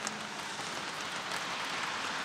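Light rain falling, an even steady hiss of drops.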